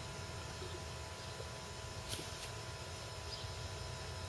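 A man drinking down the last of a glass of beer in one go: only faint gulps, two short ones about halfway through, over a quiet steady background hum.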